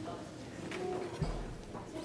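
Faint murmur of many guests' voices in a large room, with a soft low thump a little after a second in.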